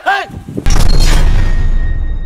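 A deep cinematic boom sound effect hits suddenly about two-thirds of a second in, with a low rumble that fades out over the next two seconds and faint high ringing tones above it.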